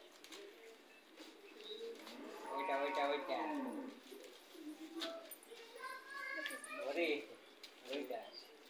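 People talking indistinctly, in two short spells about two and a half and six seconds in.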